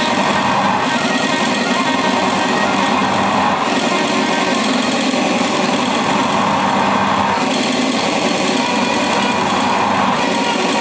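Live noise improvisation by a trio of saxophone and electronics: a dense, unbroken buzzing wall of noise that stays at one loudness throughout.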